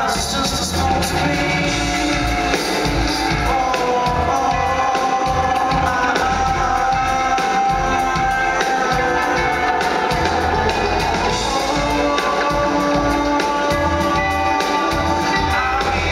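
Live band music played over a PA in a concert hall: sustained electric guitar lines over a pulsing bass and drums, with the singer's voice on the microphone at times.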